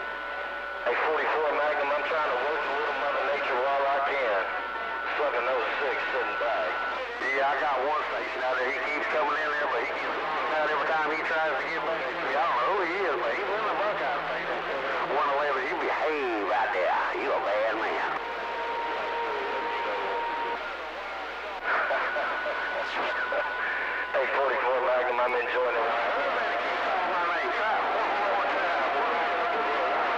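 CB radio receiver playing distant stations: garbled, warbling voices that are hard to make out, with several steady heterodyne whistles that come and go across the stretch.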